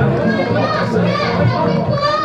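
Many overlapping voices of a crowd of people close by, chattering and calling out, with children's high voices among them.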